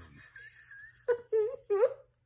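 A woman's wordless voice: three short moaning sounds, each bending upward in pitch, in the second half. A faint wavering high whine comes before them.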